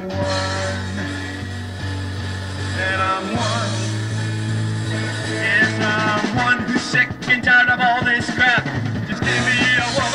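Rock band playing a power-pop/new-wave song: electric guitars, bass and drums, with a voice singing over them.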